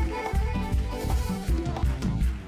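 Cuarteto music: a piano accordion playing a melody over a backing band, with a steady bass beat about two times a second.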